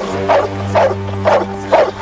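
A large dog barking viciously, about four barks in quick succession, over film score music with a low held note.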